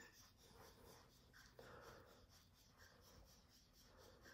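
Near silence: room tone, with only very faint soft sounds.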